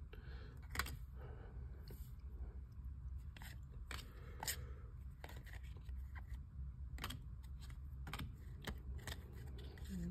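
Baseball trading cards shuffled through by hand: faint sliding of card stock with a dozen or so soft, irregular clicks and flicks as cards are moved from the front of the stack to the back.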